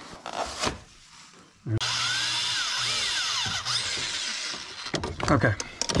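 Harbor Freight Chicago Electric close-quarters drill drilling a pilot hole through the car's steel firewall. The drill starts abruptly about two seconds in and runs steadily with a whine that rises and falls as the bit bites. It eases off and fades out near the end.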